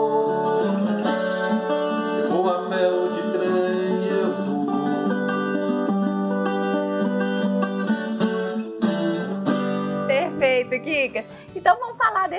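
A ten-string viola caipira strummed and plucked in a moda de viola, with a man singing over it. Near the end the music drops back and a woman starts talking.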